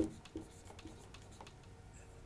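Marker writing on a whiteboard: a few faint, short strokes and taps.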